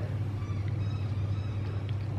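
A steady low hum with no other distinct sounds.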